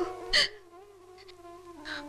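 Soft background film score of held notes that drift slowly in pitch, with a short breathy hiss about a third of a second in and a fainter one near the end.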